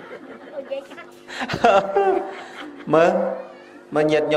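A man's voice in a Khmer sermon: two short drawn-out exclamations with sliding pitch, about a second and a half and three seconds in, with quieter gaps between them.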